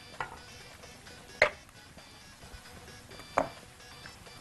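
Two sharp clinks of kitchen utensils against cookware, about a second and a half apart, over faint background music.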